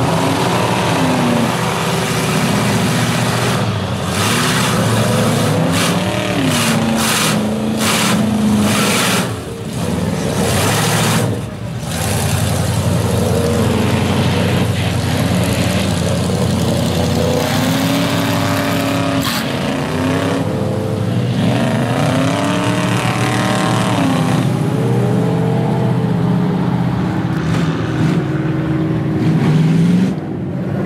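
Mud-bogging truck engines revving hard through a mud pit, the pitch rising and falling again and again, with a run of short noisy bursts in the first third.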